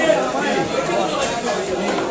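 Chatter of several voices talking at once, steady throughout.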